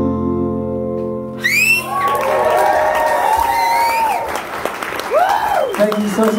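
Two acoustic guitars ringing out on a final held chord, then, about a second and a half in, the audience breaks into applause with whistles and cheers.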